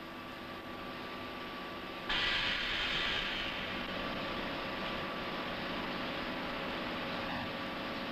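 Vertical broaching machine running: a steady machine hum, joined about two seconds in by a sudden louder hiss that slowly eases off.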